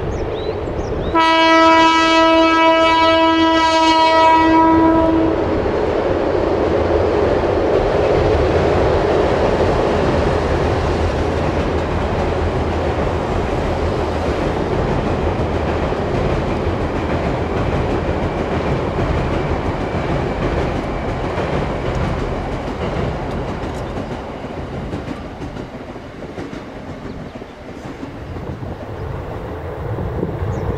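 A train horn sounds one long blast about a second in, lasting about four seconds. A train of retired 209-series electric cars then crosses a steel girder railway bridge with a steady rumble and rail clatter, which slowly fades near the end.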